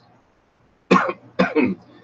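A man coughs twice, about a second in and again half a second later.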